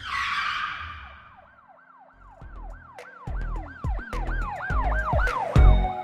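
A whoosh at the start, then a siren-like wail that swoops up and down about three times a second over deep bass hits and ticks: a produced intro sound effect building into a music track.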